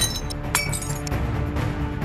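A steel knife strikes a small glass mirror, giving two sharp glass clinks, one at the start and one about half a second in, each with a brief high ringing. Background music runs underneath.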